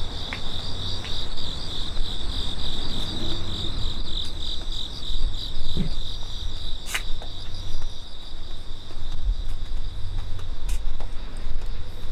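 An insect singing a steady, rapidly pulsing trill, strongest in the first half and fainter later, over a low rumble from the moving outdoor recording. Two short clicks come later.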